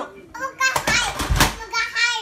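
Young children's voices, talking and calling out loudly during play.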